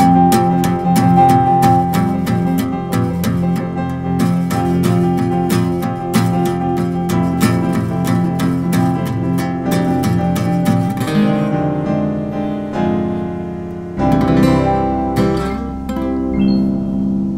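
Instrumental duet of digital piano and archtop guitar, with the guitar strummed in a steady rhythm under piano chords. About eleven seconds in the rhythm drops away into a few slower held chords that close the piece, the last one left ringing.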